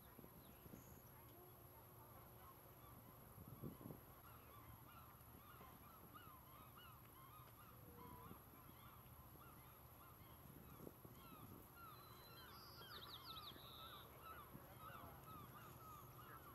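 A flock of birds calling faintly, with many short, overlapping honk-like calls running on without a break.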